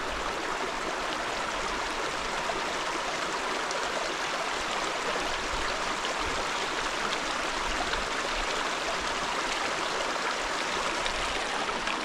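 Shallow rocky stream running over and between stones: a steady rush of water.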